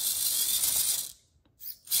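Micro RC crawler's (Axial SCX24-based) motor and geared drivetrain whirring at a high pitch as the wheels spin freely in the air under throttle. The sound cuts off about a second in, blips briefly, and comes back on just before the end.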